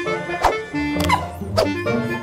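Three short, falling, bark-like shouts from an angry cartoon character, over background music.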